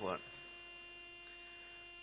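Steady electrical mains hum with several faint fixed whining tones above it, filling a pause in a man's speech; the tail of his last word is heard at the very start.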